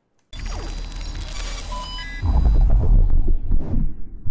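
Electronic logo sting. It starts suddenly with a low rumble, falling sweeps and a few short high beeps, then a heavy deep bass hit about two seconds in that rings on and fades.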